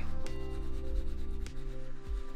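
Shoe brush bristles swept quickly back and forth over a leather dress shoe, a dry brushing rustle that rises and falls with each stroke as the cream is buffed in. Soft background music plays underneath.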